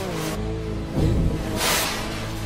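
Steinberg X-Stream spectral synthesizer playing its 'X-Stream Dancefloor' preset: a stretched, smeared loop of sustained pitched tones that bend in pitch over a low bass. A swell of hissing noise comes near the end.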